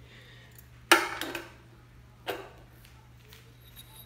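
Two knocks of metal parts and tools being set down on a pressed-steel cover: a sharp, loud one about a second in that rings briefly, and a lighter one a little past the halfway point, over a faint steady hum.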